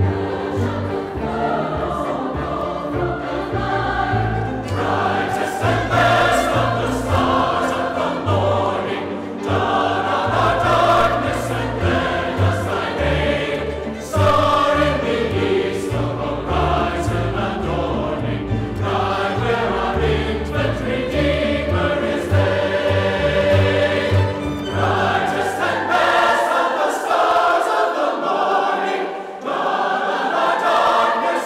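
A large mixed choir sings with a string orchestra in a reverberant cathedral, over deep bass notes that move in steps. Near the end the bass drops away and the upper voices carry on.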